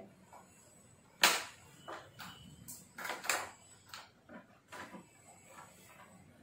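A sharp click about a second in, then a string of lighter clicks and rattles: a shoulder strap's clip being hooked onto a portable Bluetooth speaker and the plastic body handled.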